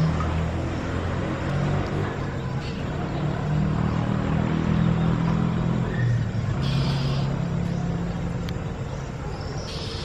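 A low, steady motor drone with a slightly wavering pitch. Short hissy bursts come about seven seconds in and again near the end.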